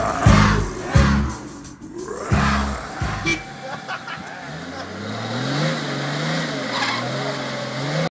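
A few heavy low drum beats at the end of a song, then from about four seconds in a vehicle engine running, its pitch rising and wavering.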